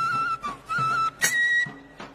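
Tripuri folk dance music: a flute plays a melody in short, stepping phrases, with a drum hit about a second in.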